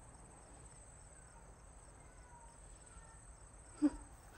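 Crickets chirping faintly and steadily in a high-pitched night-time trill. A single short, sharp sound comes just before the end, louder than the crickets.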